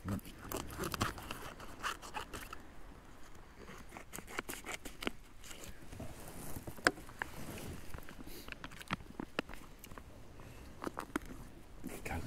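Scissors snipping and a foil MRE food pouch crinkling as it is cut open and handled: a scatter of small clicks and rustles, with one sharper click about seven seconds in.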